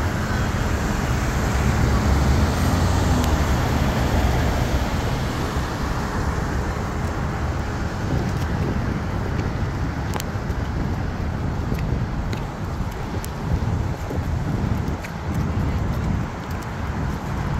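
City street traffic: a steady low rumble of passing vehicles, a little stronger during the first several seconds.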